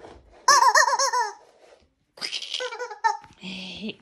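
A toddler laughing in two short, high-pitched bursts.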